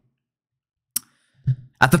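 Near silence broken by one short, sharp click about a second in, then a brief low sound and a man starting to speak near the end.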